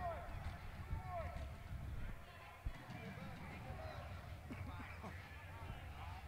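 Faint, distant voices and shouts of players and spectators in a large indoor field hall, over a low steady hum.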